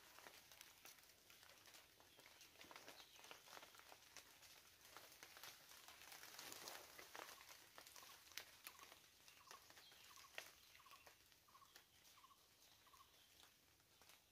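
Near silence: faint forest ambience with scattered faint clicks, and in the second half a faint run of about eight short repeated notes, a little over half a second apart.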